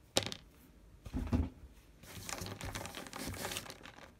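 Handling noise from hands moving small toys on a table: a sharp click, a soft knock about a second later, then a crinkling rustle lasting about a second and a half.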